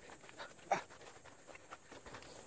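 Faint, hard breathing of a person climbing a steep rocky path, with one louder short breath about three-quarters of a second in.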